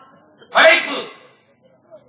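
Crickets chirping steadily in a fast, even pulse, with a man's voice calling out once, briefly and loudly, about half a second in.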